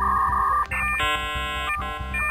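Electronic 'processing' sound effect: a steady pulsing beep, then, a little under a second in, a buzzy synthesizer chord that cuts out briefly near the end and starts again.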